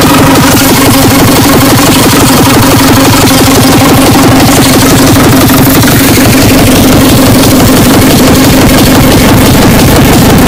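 Speedcore electronic music: an extremely fast, distorted kick-drum beat under a steady distorted drone, loud and heavily compressed.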